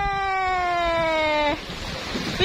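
A woman's voice holding one long sung note that slowly falls in pitch, ending suddenly about a second and a half in. Wind noise on the microphone follows.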